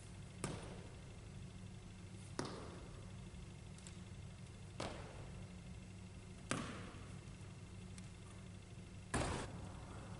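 Basketball shoes landing on a hardwood gym floor as a player hops forward and backward, giving a faint sharp knock every couple of seconds, six in all, the one near the end the loudest.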